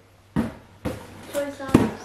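A few dull thumps and knocks as a cardboard parcel is picked up and handled, the loudest and deepest one near the end.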